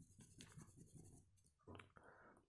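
Faint rubbing of a rubber eraser on a paper workbook page, in short strokes, as a wrongly written pencil word is rubbed out.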